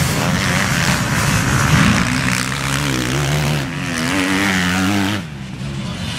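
A pack of MX1 motocross bikes revving hard as they pass close by, many engines together with pitch rising and falling as the riders work the throttle. About five seconds in the sound drops suddenly to a quieter, more distant engine noise.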